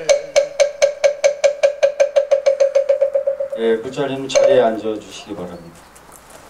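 A moktak, the Buddhist wooden fish, struck in a speeding-up roll, the hollow knocks coming faster and faster until they stop about three and a half seconds in: the closing roll of a chant. A voice is heard briefly afterwards.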